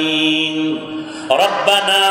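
A man chanting an Arabic supplication (du'a) in long, drawn-out melodic notes. One note is held for about a second, then a new phrase starts with a rising slide just past halfway.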